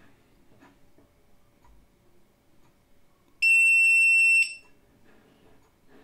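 A single electronic beep, a steady high tone lasting about a second, sounds about three and a half seconds in. It comes from the VVDI Multi-Prog programmer and signals that its read of the module's EEPROM has finished.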